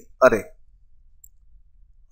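A man says one word, then a pause of faint room tone.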